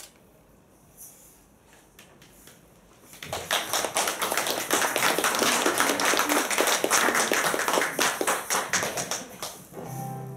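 Audience applause: a few faint taps, then clapping breaks out about three seconds in, holds steady and dies away near the end.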